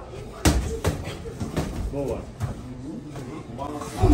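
Boxing gloves landing punches in sparring: one sharp smack about half a second in, then a few lighter hits, with voices in the gym around them.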